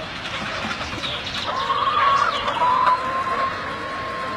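A large flock of free-range laying hens clucking and calling, with many short calls. A long drawn-out high call begins about halfway through and holds nearly steady almost to the end.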